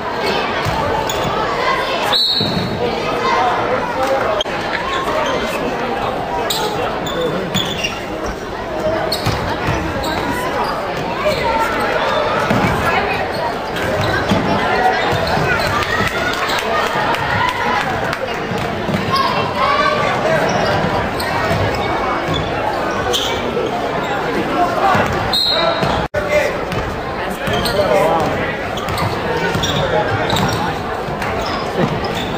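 Basketball dribbled on a hardwood gym floor, with spectators' voices and shouts echoing around a large gymnasium. Two short high tones come about two seconds in and near the end, and the sound drops out for an instant twice.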